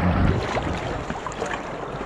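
Steady rush of shallow glacial river water, with wind buffeting the microphone.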